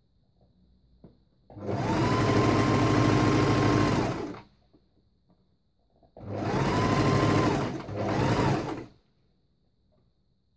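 Electric sewing machine stitching through dress fabric in three runs, each speeding up to a steady hum and then winding down: one long run of about three seconds, then two shorter runs back to back.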